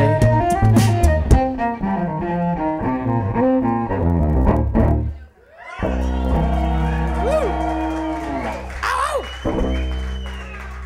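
Live cello music over looped beatboxed percussion, a quick run of bowed notes. It breaks off about five seconds in. Then a low cello note is held, with a couple of short sliding pitches over it.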